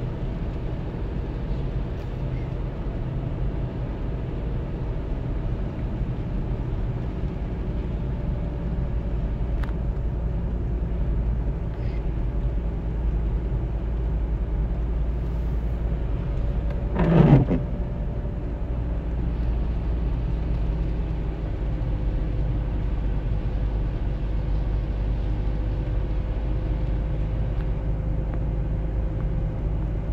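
Steady engine and tyre noise inside a moving car's cabin on a wet road. A little past halfway there is a short, louder sound that falls in pitch.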